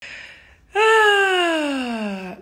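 A woman draws a breath, then lets out one long vocal moan that slides steadily down in pitch for about a second and a half. It is a sound of frustration and disappointment.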